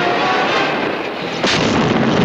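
Film sound-effects track: dense noise with faint music under it, then a sudden loud explosion about a second and a half in.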